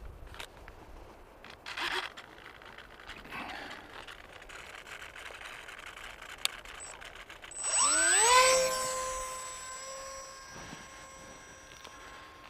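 Electric motor and propeller of a Bixler 2 foam RC plane spinning up to launch throttle about seven and a half seconds in: a whine that rises quickly in pitch and then holds steady, fading over the following seconds as the plane flies away. A few faint clicks of handling come before it.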